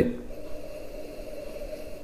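A soft, steady inhale through the nose into a whiskey glass as the dram is nosed.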